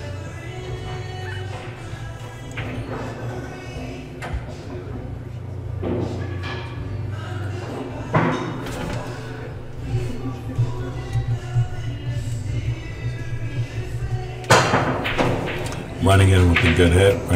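Background music playing steadily, with one sharp crack of a cue stick striking the cue ball about a second and a half before the end.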